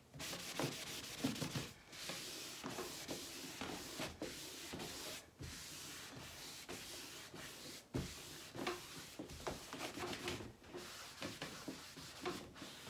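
A cloth rag rubbed hard back and forth over a waxed, painted wooden dresser panel, buffing liming wax to a satin sheen: a steady scrubbing hiss broken by short pauses between strokes.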